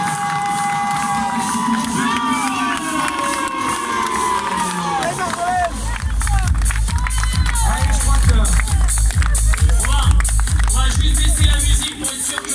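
Finish-line crowd cheering and clapping over music played through loudspeakers. About halfway through, a heavy bass beat comes in and the clapping thickens.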